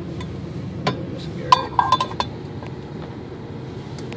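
Cooking pot and spoon clinking as the pot is taken off the camp stove's flame: a knock about a second in, then a quick run of sharp, ringing clinks, over a steady low hum.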